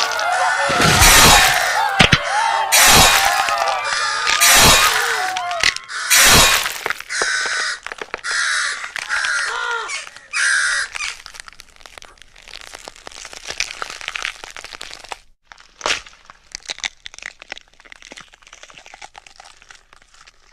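A sound-effect mix: loud repeated cracking and smashing bursts over strained yelling, then a run of short, harsh caws, thinning into scattered faint crackles over the second half.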